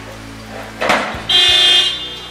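A car horn sounds once, a steady honk of about half a second starting past the middle, just after a brief noisy burst about a second in.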